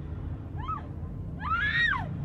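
A woman screaming: a short high cry about half a second in, then a longer one that rises and falls in pitch.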